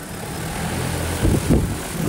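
Steady mechanical running noise: a low hum under a rushing hiss, with a brief swell about a second and a half in.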